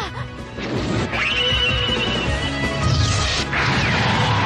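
Animated action sound effects, crashing impacts with a held high whine for about a second in the middle, over background music.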